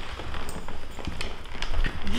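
A Rhodesian Ridgeback walking on a hardwood floor: its claws click and its paws pad at an uneven pace, with people's footsteps alongside.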